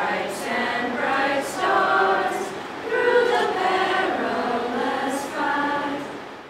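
A group of people singing a national anthem together, unaccompanied, with the sound beginning to fade near the end.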